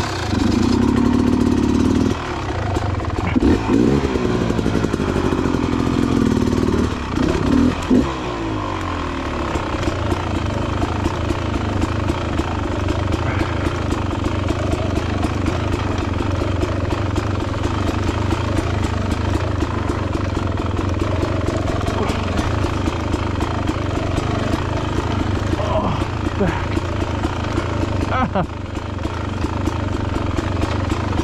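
Dirt bike engine comes in loud right at the start, revs up and down a few times over the first eight seconds, then runs at a steady low throttle while the bike creeps over rocky trail.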